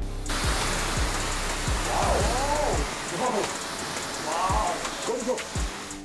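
Water spraying hard from a wash-bay spray gun onto a car's windshield glass, a steady hiss that starts abruptly just after the start and dies away near the end, with faint voices under it.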